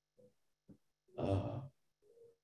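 A man's breathy, sighing 'uh' about a second in, after near silence.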